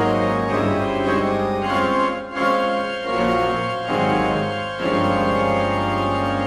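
Church organ and grand piano playing a duet: full, sustained organ chords that change every second or two, with short breaks between phrases.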